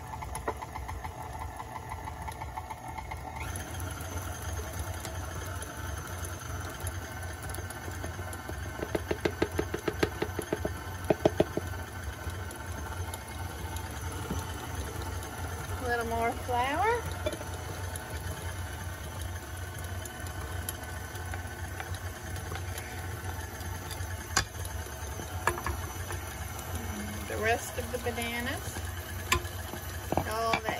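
KitchenAid stand mixer's motor running steadily, its flat beater turning through thick banana bread batter in a stainless steel bowl. A rapid run of ticks rises above the hum about nine to eleven seconds in.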